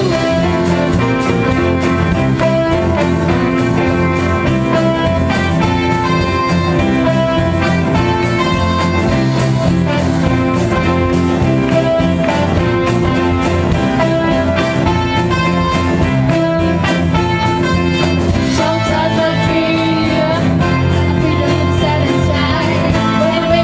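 A live band playing an instrumental passage, guitar to the fore over a drum kit, with no singing.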